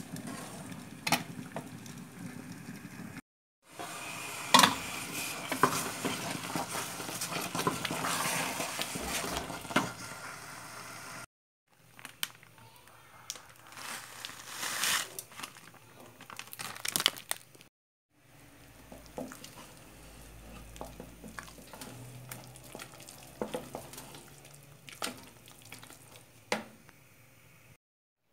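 Wooden spoon stirring thick pumpkin jam in an aluminium pot on the stove, the bubbling, spattering mass squelching and popping, with sharp knocks of the spoon against the pot.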